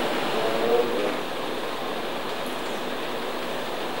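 A steady, even rushing noise, with a faint voice in the first second.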